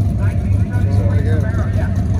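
Steady low engine rumble from vehicles running nearby, with faint talking over it.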